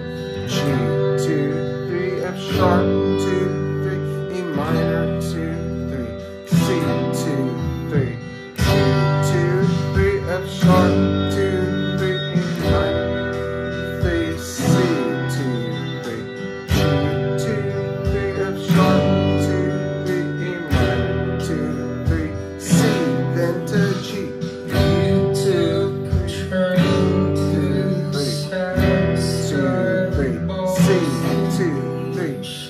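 Fender electric guitar strumming a repeating G, F sharp, E minor, C chord progression, with the chord changing about every two seconds, along with backing music that has a bass line.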